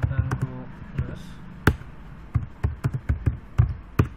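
Computer keyboard being typed on: irregular key clicks with a few harder strikes, the loudest about a second and a half in and again near the end.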